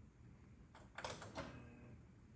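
A hand knocking on the glass screen of a CTX CRT monitor: a few soft taps close together about a second in, quiet overall.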